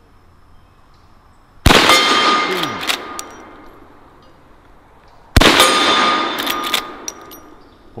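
Two .44 Magnum shots from a Marlin 1894 lever-action rifle, a little under four seconds apart, each with the clang of a hit steel plate that keeps ringing as the report dies away. Small clicks follow each shot as the lever is worked to feed the next round.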